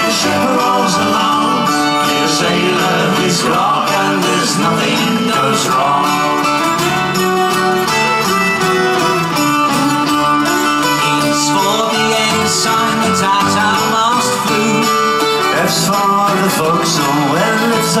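Live folk-rock band music, an instrumental passage between sung verses: strummed acoustic guitar and mandolin over drums, with a melody line carried on top.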